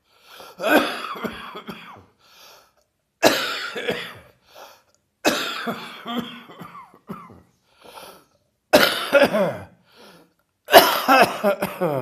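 A person coughing hard from a heavy chest cold, in five fits a couple of seconds apart, each fit a run of several coughs. The last fit, near the end, is the loudest.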